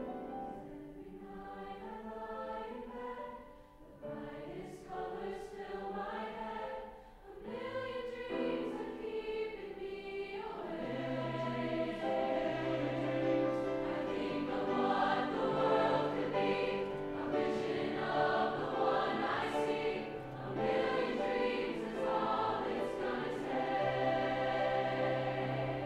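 High school choir singing under a conductor, softly at first and then growing fuller and louder about eleven seconds in.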